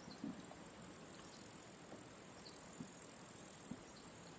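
Meadow insects chirring in a steady high-pitched band, louder from about a second in, with a few faint low thumps.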